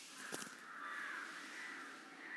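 A single click, then a faint animal call lasting about a second in the background.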